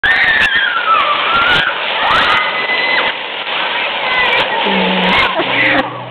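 High-pitched shouts of children and the voices of a crowd over the steady hiss of fountain jets spraying. Near the end, low held tones come in.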